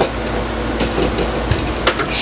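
Steady hum of a running air conditioner, with a few sharp knocks and clunks from a camera and tripod being handled and moved, the loudest near the end.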